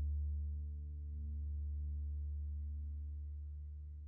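Background music: a sustained low drone chord that holds steady, dips slightly about a second in, then slowly fades.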